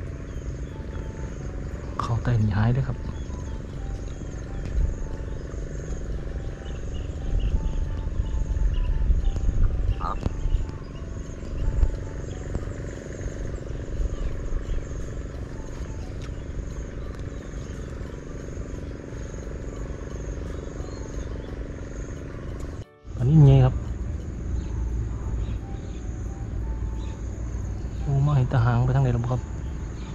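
Insects chirping steadily in a high, pulsing note over a low rumble, with a few short vocal sounds: one about two seconds in, the loudest just after a brief dropout in the sound, and one near the end.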